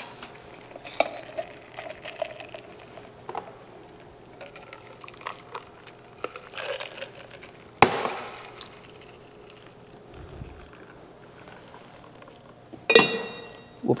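Clinks and knocks of a metal cocktail shaker and glassware while a shaken cocktail is opened and poured into two glasses: light taps throughout, one sharp knock about halfway through and a louder ringing clink near the end.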